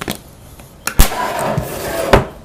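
Handling noise on a desk: light clicks, then a sharp knock about a second in, followed by about a second of scraping as a sealed trading-card box is grabbed and dragged across the tabletop.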